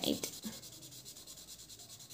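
A felt-tip marker rubbing back and forth on paper, filling in a solid dark patch: a quiet, soft scratching.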